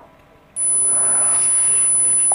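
A steady, high-pitched 10 kHz tone from an Android anti-mosquito sound app, played through the phone, starting abruptly about half a second in. It is meant as a mosquito-repelling tone.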